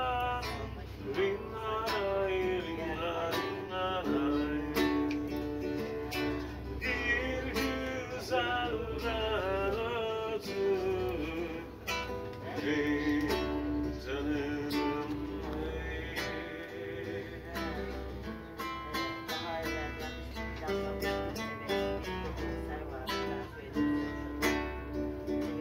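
A man singing a song while strumming an acoustic guitar, played live.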